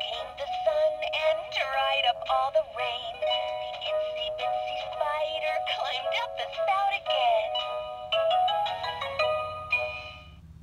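Fisher-Price Laugh & Learn toy radio playing a sung children's song through its small speaker, thin and tinny with no bass.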